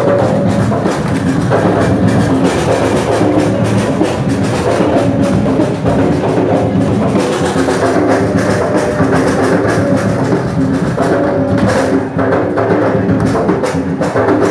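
Garifuna drum music: loud drums and percussion keeping up a steady dance rhythm.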